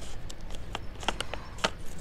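Scissors snipping across the tops of two plastic seed packets, giving several sharp, short clicks and crinkles.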